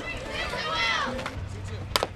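Players' voices calling out, then just before the end a single sharp crack of a softball bat striking the ball.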